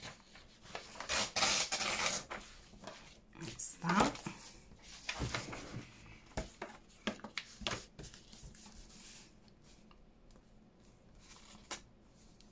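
Sheets of paper being handled, rustled and slid against each other on a table, with small taps and scrapes, most busily in the first few seconds. A brief voiced sound rises in pitch about four seconds in, and the handling grows quieter near the end.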